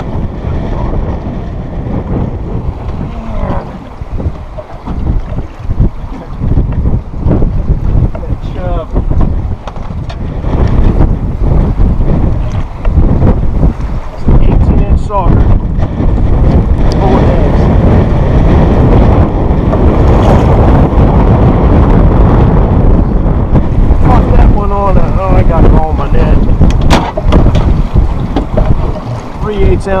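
Strong, gusty wind buffeting the microphone on an open boat, loud throughout and heavier from about a third of the way in.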